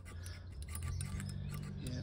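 Faint scraping and light clicks of a steel feeler gauge being worked under the exhaust camshaft of a Honda CRF250L cylinder head, checking the valve clearance after new shims; the clearance is found to be fine.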